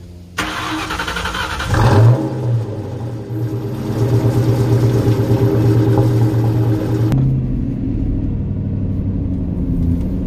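Ford Mustang GT's 4.6-litre two-valve V8 under way. The engine revs up about two seconds in, pulls strongly and steadily, then eases off about seven seconds in.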